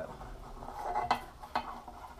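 Bent steel flat-bar strip being shifted by hand on a steel base plate and table: a light metal scrape building up, then a sharp metallic clink about a second in and a smaller knock shortly after.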